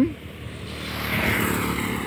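Small motorcycle approaching along the road, its engine growing steadily louder as it nears.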